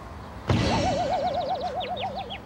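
Cartoon sound effect for a soccer ball hitting a head: a sharp thump about half a second in, then a wobbling spring 'boing' for over a second, with fast high chirps above it.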